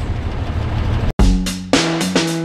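Toyota FJ60 Land Cruiser's 2F straight-six idling steadily for about a second, then cut off suddenly and replaced by drum-led music.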